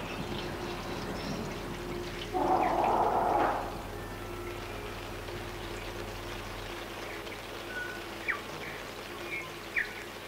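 Nature soundscape of running, trickling water under a faint steady hum, with a louder gush of water from about two and a half seconds in that lasts about a second. A few short bird calls sound near the end.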